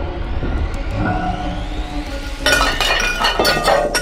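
Tableware clattering: about two and a half seconds in, a rapid burst of crashing and clinking as plates and glasses are dragged off a table by a yanked tablecloth, over background music.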